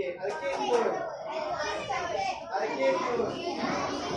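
Many children talking at once: busy classroom chatter with overlapping young voices.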